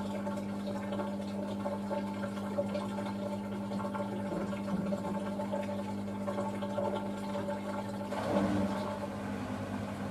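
Samsung WW90K5410UW front-loading washing machine mid-cycle: a steady machine hum under water sloshing in the drum around wet laundry. A louder swish of water comes about eight seconds in.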